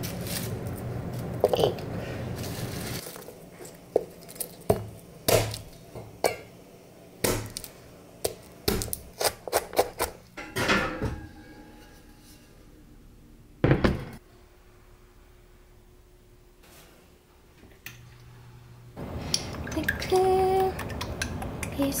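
Kitchen clatter of pots and utensils: a run of separate knocks and clinks, then one loud thunk near the middle as a heavy enamelled pot is set down on a glass-top stove. Music with a singing voice comes in near the end.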